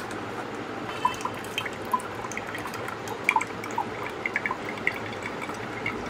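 Blended apple juice pouring and dripping through the strainer cap of a portable bottle blender into a drinking glass, a run of small, irregular drips over a steady trickle.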